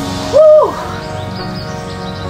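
A woman's short, high 'wow' exclamation, rising then falling in pitch, less than a second in, over background music.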